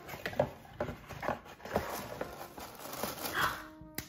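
Tissue paper crinkling and rustling, with light handling of a cardboard shoebox, heard as a string of short, irregular crackles.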